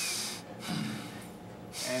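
Heavy breathing from exertion during a strenuous yoga exercise. There are two loud breaths, one at the start and one near the end.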